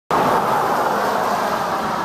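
Loud, steady outdoor rushing noise, even throughout, with no separate sounds standing out.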